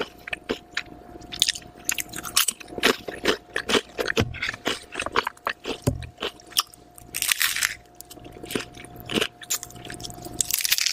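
Close-miked chewing of crunchy ridged potato chips, a dense run of sharp crackling crunches, with a softer stretch of tearing and biting into a soft-bread sandwich in the second half. A faint steady hum runs underneath.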